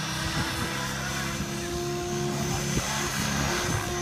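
Radio-controlled 3D aerobatic helicopter in flight: a steady hum of the rotor and drive with a thin high whine over it.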